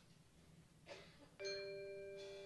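Mallet percussion from a school concert band strikes a single bell-like note about one and a half seconds in and leaves it ringing. Before it the hall is near quiet, with one brief soft noise.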